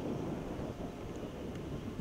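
Quiet, steady outdoor background noise: a low rumble under a faint hiss, with no distinct events.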